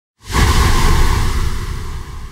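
Cinematic whoosh sound effect with a deep booming rumble for an animated logo reveal. It starts suddenly just after the beginning, is loudest for about a second, then slowly fades away.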